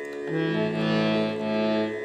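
Hand-pumped harmonium sounding several reed notes held together. They start about a third of a second in and hold steadily, changing to new notes right at the end.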